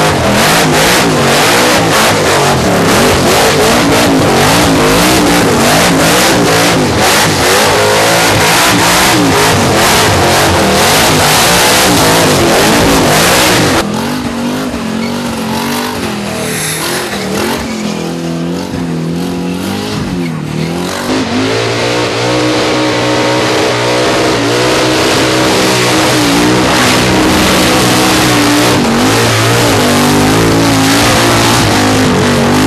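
Supercharged burnout cars' engines revving hard, with their pitch swinging up and down as the rear tyres spin in smoky burnouts. The sound eases off for several seconds a little under halfway through, then builds again.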